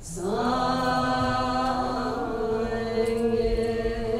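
Voices chanting a Tibetan Buddhist prayer in a slow melodic line: the chant enters just after a short pause, slides up and holds a long, steady note.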